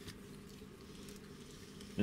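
Faint, steady low background noise with no distinct clicks or knocks.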